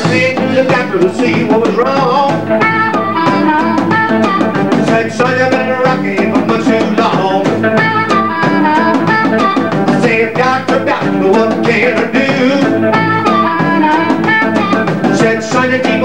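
Live blues band in an instrumental break: an amplified harmonica solo, played cupped against a microphone, bending and sliding notes over drums and electric guitar.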